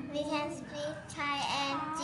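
A young girl's voice, speaking in a drawn-out, sing-song way.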